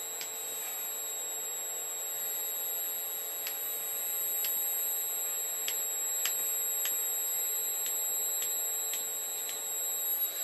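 Steady high-pitched electrical whine over a low hum, heard as a FANUC industrial robot arm is jogged slowly by hand from its teach pendant. About a dozen faint, irregularly spaced clicks sound over it.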